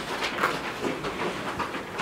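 Boning knife working around the bone of a raw pork hind leg: faint, irregular small clicks and scrapes of blade on bone and meat on a wooden table.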